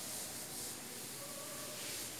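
A chalkboard duster being rubbed across a chalkboard, wiping off chalk writing: a steady, faint rubbing.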